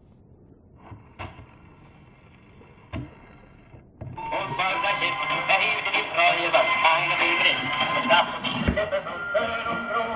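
Wind-up gramophone playing a record: two faint knocks, then about four seconds in the music starts and runs on.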